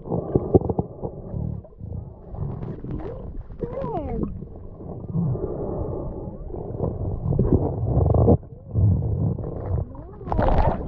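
Muffled underwater sound picked up by a camera held beneath the surface: low rumbling water movement with irregular surges, a few short gliding tones around the middle, and a sudden drop near the end.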